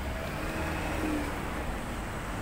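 City street ambience: a steady low rumble of traffic with faint background voices.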